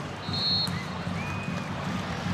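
Stadium crowd noise from a football match, with a short, high referee's whistle about half a second in, signalling that the penalty kick may be taken.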